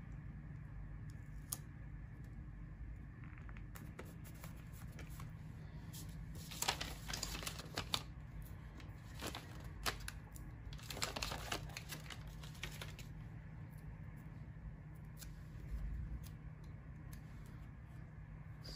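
Paper sticker sheets being handled and stickers peeled off them: two short spells of crackly rustling and crinkling, over a low steady hum.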